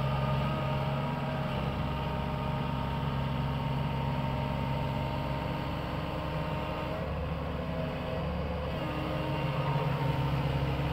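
SANY SY75C mini excavator's diesel engine running steadily as the machine digs, a low drone with thin steady whining tones above it, easing slightly for a moment late on.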